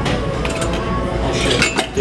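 Loaded steel barbell knocking against the bench-press rack's steel upright during a rep, with the weight plates clinking. There are several sharp metallic clinks and knocks, the loudest cluster about one and a half seconds in.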